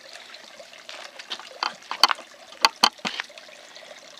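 Radish leaves rustling as a hand moves them, with three sharp clicks, the first about halfway through and the next two close together just after.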